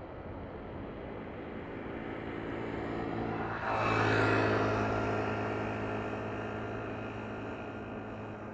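Boeing 777F's GE90 jet engines during landing rollout. The steady noise builds slowly, then swells sharply about three and a half seconds in with a whine over a deep hum, as reverse thrust is applied, and afterwards slowly dies away.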